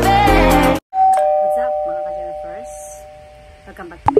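Two-note ding-dong doorbell chime, a higher note then a lower one, both ringing and fading away over about three seconds. It follows music that cuts off suddenly just under a second in.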